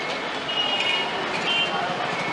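Street ambience: a steady wash of traffic noise with indistinct background voices, and a few brief high-pitched tones.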